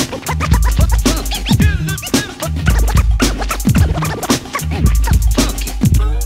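Hip hop track passage without vocals: a DJ scratching records on a turntable over a repeating deep bass line and drums.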